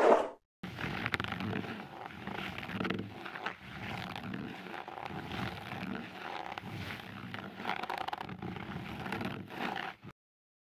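Scraping sound effect for a scalpel working through a mass of bugs: continuous rough scraping and crackling with many small clicks through it, after a short burst at the very start and a half-second gap.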